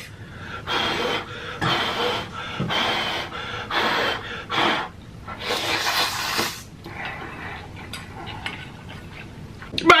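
A person slurping instant noodles and chewing close to the microphone. It comes as a run of short, noisy slurps, the longest and loudest about six seconds in, then quieter mouth sounds.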